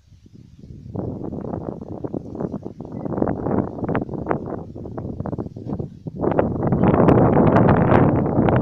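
Wind buffeting the microphone in irregular gusts, much stronger from about six seconds in.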